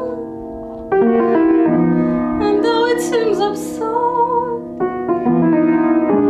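Upright piano playing chords under a sung melody held with vibrato. New chords strike about a second in and again near the end.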